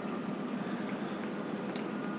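Steady low hiss of room noise with a couple of faint ticks.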